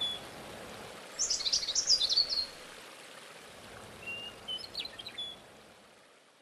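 Songbirds singing outdoors over a faint steady hiss of open-air ambience. A loud cluster of quick high chirps comes about a second in, and a shorter phrase of whistled notes and chips comes near the end, as the sound fades out.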